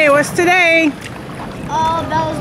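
A high voice with drawn-out, wavering notes for about the first second, then a quieter steady outdoor background noise.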